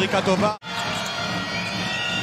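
Steady crowd noise in a basketball arena. A brief bit of commentator speech cuts off abruptly about half a second in.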